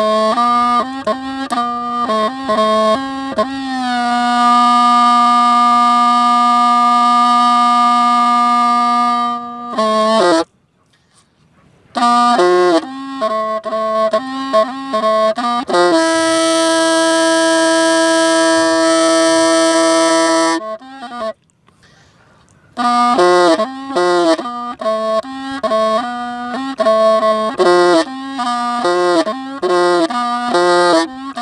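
Hmong raj, a long bamboo pipe, played solo in a sad melody. Runs of short ornamented notes alternate with two long held notes, the second higher than the first. There are short pauses about ten and twenty-one seconds in.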